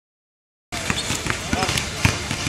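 Basketballs bouncing on a hardwood court in a large indoor arena, an irregular run of sharp knocks, with voices talking. The sound starts suddenly about two-thirds of a second in.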